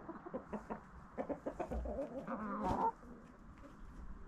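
Backyard chickens clucking in a quick run of short calls, loudest just before three seconds in, then dropping away.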